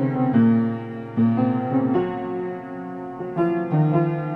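Solo piano playing chords in the low-middle register, a new chord struck about once a second and left to ring.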